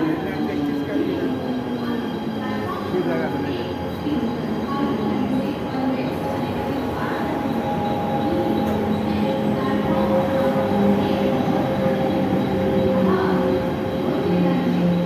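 Mumbai suburban EMU local train running past a platform: steady whine of its electric traction motors over the rumble of wheels on rail, growing a little louder toward the end.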